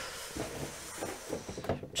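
Rustling followed by a few light knocks and clicks: someone rummaging through and moving objects while looking for an Arduino board.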